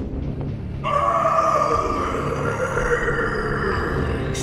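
A creature's growl sound effect begins about a second in and is held, its pitch sinking slightly, over low, dark background music.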